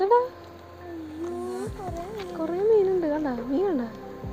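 A voice without clear words, held in long notes whose pitch slides and wavers up and down, over a faint steady hum.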